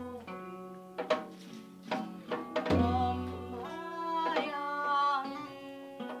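Live acoustic folk music: a small steel-string acoustic guitar played with a man singing, over strikes on a janggu (Korean hourglass drum), with a deep booming drum stroke a little under three seconds in that rings for about a second.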